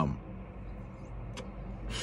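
Steady low rumble inside a car cabin, with a single faint click about one and a half seconds in.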